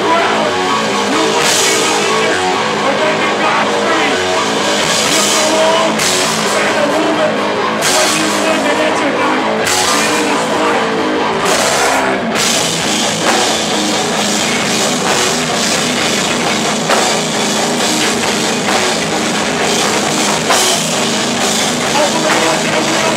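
A heavy rock band playing loud and live, with distorted electric guitars over a pounding drum kit, heard in a small room.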